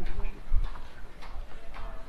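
Footsteps on snow, an even walking pace of about four steps in two seconds.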